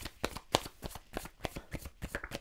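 A tarot deck being shuffled by hand: a quick, irregular run of soft card clicks and riffles, about seven a second.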